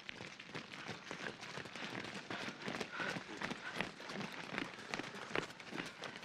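A group of soldiers running in boots on a wet road: many quick, irregular footfalls overlapping one another.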